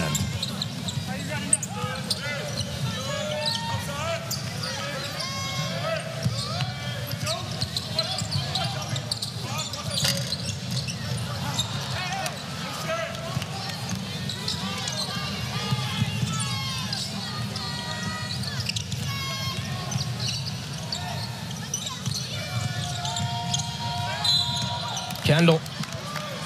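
Basketball game in a packed arena: the ball bouncing on the hardwood court over steady crowd noise and scattered shouts. A steady whistle-like tone sounds near the end as a foul is called.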